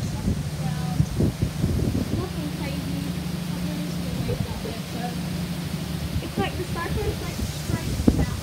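Cyclone wind gusting outdoors and buffeting the microphone, over a steady low hum, with faint voices talking in the background.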